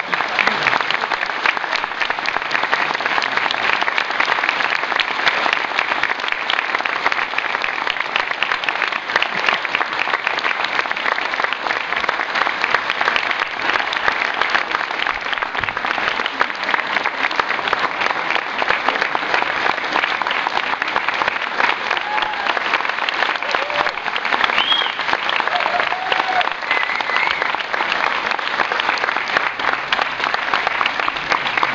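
A large audience applauding, a dense, even clapping that holds steady and at length, with a few faint voices rising briefly above it in the second half.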